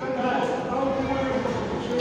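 Indistinct voices calling out in a large, echoing gym hall, with a loud shout starting at the very end.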